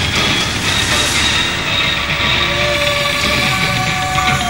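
Film soundtrack: a dense, steady rumbling noise, with held musical notes coming in about two seconds in.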